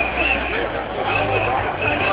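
Voices talking in a street crowd, not picked up as words, over a low steady hum that grows fuller in the second second.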